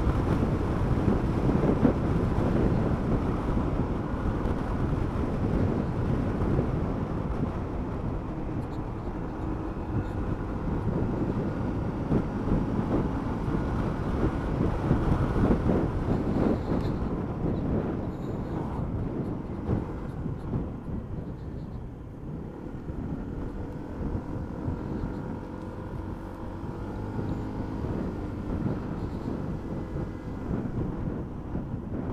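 Wind rushing over the camera and motorcycle engine and road noise while riding along at speed. The rush eases off in the second half as the bike slows, leaving a faint, steady engine note more audible.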